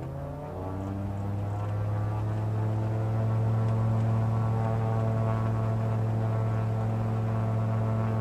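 Searey amphibious flying boat's engine run up to takeoff power on the water. Its drone rises in pitch over the first three seconds or so, then holds steady and loud as the hull accelerates up onto the step.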